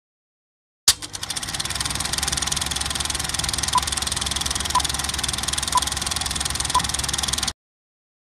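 Film projector sound effect: a fast, steady clatter that starts with a click about a second in and cuts off suddenly near the end. Over it come four short beeps a second apart, counting down a film leader.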